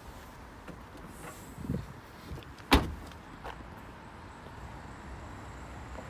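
Peugeot 2008's tailgate being shut: one sharp slam a little under three seconds in, after a couple of softer knocks.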